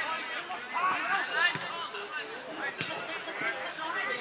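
Footballers and spectators shouting and talking over each other on a grass pitch, with a couple of short knocks in the middle.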